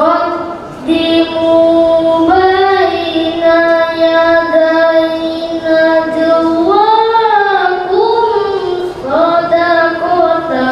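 A boy's voice reciting the Quran in melodic tilawah style, holding long, steady notes and ornamenting them with wavering turns in pitch.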